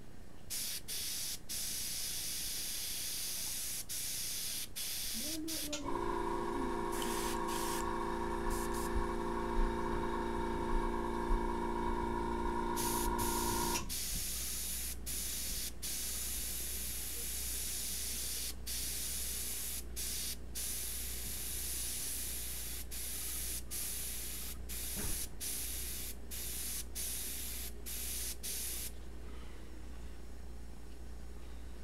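Airbrush spraying paint: a steady air hiss broken by many brief gaps as the trigger is released and pressed again in short strokes. From about six to fourteen seconds in, a steady humming tone sounds underneath the hiss.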